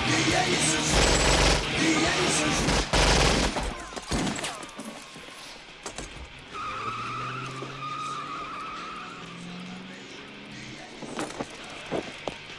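Film soundtrack of a shootout: loud rapid gunfire and crashing for the first few seconds, which a viewer recognises as the gun sounds from the game Doom, then quieter sound with a steady high tone and a low voice.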